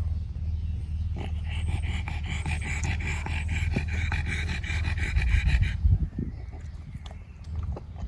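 A pug panting fast with its tongue out, cooling off in summer heat: quick, rhythmic breaths that stop about six seconds in. A low rumble runs underneath and swells just before the panting stops.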